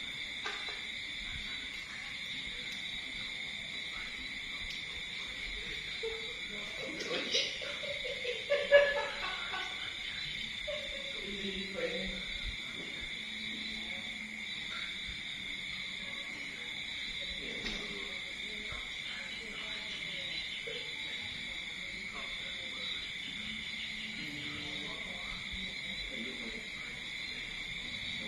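Steady high-pitched chorus of night insects, holding two pitches without a break, with faint indistinct voices and a few small clicks between about six and twelve seconds in.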